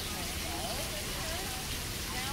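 Water falling in a curtain of fine strands from a fountain and splashing steadily into a shallow stone pool.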